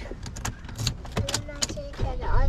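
Car keys jangling and clicking as the key goes into the ignition of a Daihatsu car, several sharp clicks in the first second and a half, with a brief steady tone near the end.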